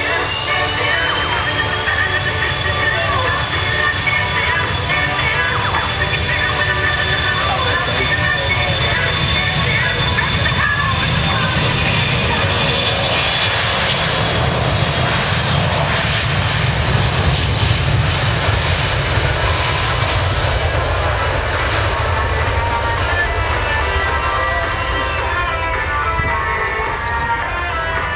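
RAF E-3D Sentry's four CFM56 turbofan engines at high power as it rolls past on the runway. The noise builds to its loudest about halfway through, with a steady high whine over it, and the whine falls in pitch near the end as the aircraft moves away.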